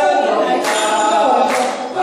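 A group of Taiwanese Indigenous performers singing a cappella in chorus, men's voices leading, with a brief break for breath near the end.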